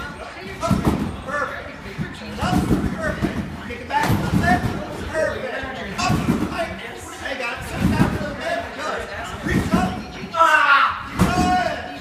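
A gymnast bouncing on a trampoline: heavy thuds as he lands on the trampoline bed, every second or two, in a large echoing gym, with voices talking over them.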